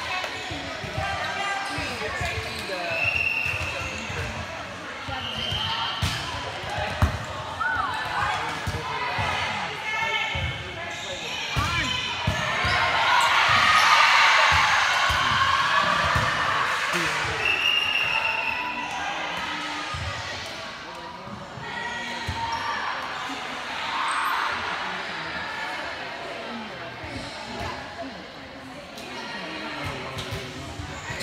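Volleyballs being hit and bouncing on a gym floor during play, a steady run of sharp slaps and thuds, with players calling out; the voices swell loudest in the middle.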